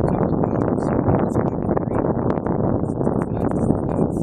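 Wind buffeting the microphone: a loud, steady noise without pauses.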